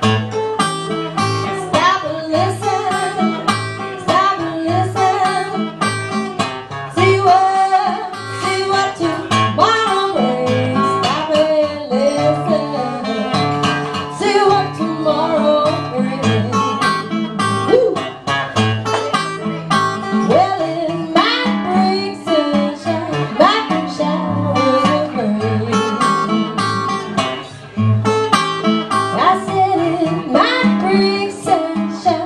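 Acoustic guitar playing a blues over a steady, repeating bass-note pulse, with a woman's voice singing along at times.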